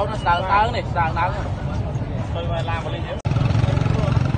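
People talking over a low engine rumble; about three seconds in the sound cuts abruptly to a louder, steady low hum of vehicle engines.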